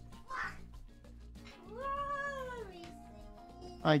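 A domestic cat meowing once, a single drawn-out call that rises and then falls in pitch, about halfway through.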